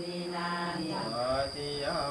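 Male voices chanting Buddhist ordination vows in a steady, held monotone, with the pitch dropping slightly about halfway through.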